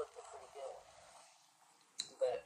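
A woman's voice speaking briefly, then near silence.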